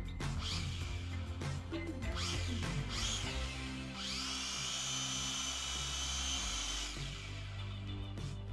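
Syma X5C quadcopter's small electric motors spinning up on the desk: three short rising whines, then a steady high whine for about three seconds that cuts off sharply.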